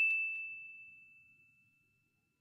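A single bright, bell-like ding, struck just before and ringing out as one clear high tone. It fades over about a second, and a faint tail lingers to the end.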